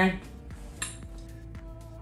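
Glass candle vessels clinking as they are handled and set down. There are a few light clicks and one sharper knock about a second in, followed by a ringing tone.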